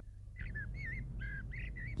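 A bird chirping: a quick run of about six short whistled notes, some with a wavering pitch, beginning about half a second in.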